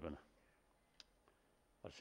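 Near silence in a pause between spoken phrases, with one faint short click about halfway through.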